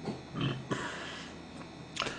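A brief low vocal sound from the eater, then a light click as a drinking glass is set down on the table, followed by faint rustling.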